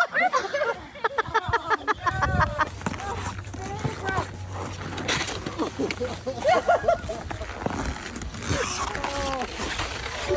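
Excited, high-pitched voices calling out in short bursts, with no clear words.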